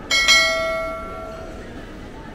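A bright bell chime, struck once just after the start and ringing out over about a second and a half: the notification-bell 'ding' sound effect of a subscribe-button animation.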